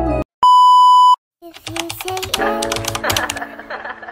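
A single loud electronic beep, one steady tone lasting under a second, set between two brief silences. Quick clicks and ticks then come in, followed by music with held notes.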